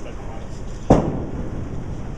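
A bowling ball hitting the lane as it is released: one sharp, loud thud about a second in, over the steady rumble of a bowling alley.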